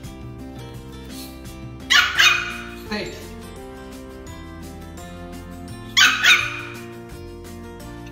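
A Pomeranian puppy barking in two quick pairs, about two seconds in and again about six seconds in, with a softer single bark just after the first pair, over steady background music.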